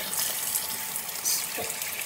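Water running steadily from a bathroom basin tap, the stream splashing into the sink by the drain.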